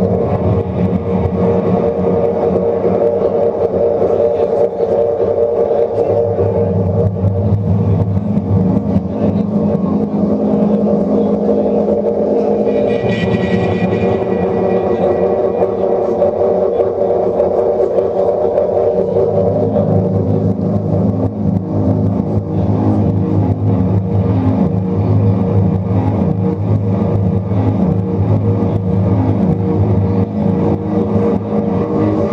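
Live rock duo playing a loud, droning instrumental passage with drums: sustained, distorted chords that hold and shift to new pitches about every six seconds.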